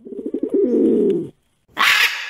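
A pigeon cooing for just over a second, a low, pulsing call. Near the end comes a sudden harsh noise that fades away.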